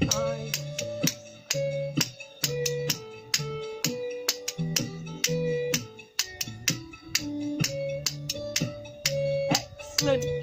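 Musical spoons clicking a repeating rhythm over a dance music track with a steady beat.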